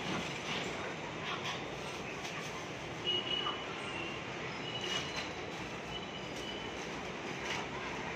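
Thin plastic bag rustling in short bursts as handfuls of raw chicken pieces are dropped in and the bag is twisted shut, over a steady background hum. A few brief high squeaks come in the middle.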